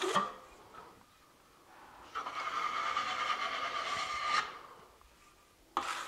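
Steel drywall trowel scraping across wet joint compound on the wall for about two seconds, cutting off the edge of the mud: a hissing scrape with a steady high note in it. Near the end, a short sharp scrape of the trowel against the hawk.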